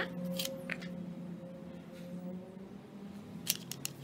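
Light clicks and taps from fingers and nails handling makeup: a few in the first second, then a quick run of about four clicks near the end, over a faint steady low hum.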